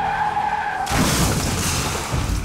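Car tyres squealing under hard braking, then, about a second in, a sudden loud crash as the car strikes cattle standing on the road.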